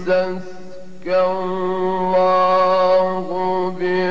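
A male Qur'an reciter chanting solo in the melodic, drawn-out mujawwad style. A short phrase and a brief dip are followed, about a second in, by one long ornamented note held until near the end.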